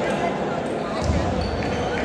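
Table-tennis balls clicking on tables and bats amid a steady babble of voices in a large hall, with a dull thump about halfway through.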